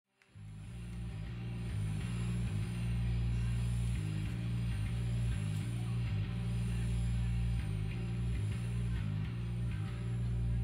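Live band music opening a song, carried by a deep, sustained bass line that steps from note to note about once a second. It swells up from nothing over the first couple of seconds.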